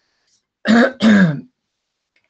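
A man clearing his throat: two short, loud throat-clears in quick succession, a little over half a second in.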